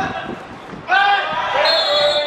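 Several voices shouting at once as a player goes down, followed about a second and a half in by a referee's whistle blowing for a foul.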